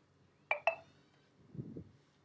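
Two sharp mouse-button clicks about a fifth of a second apart, each with a brief ringing tone, followed near the end by a soft low rustle.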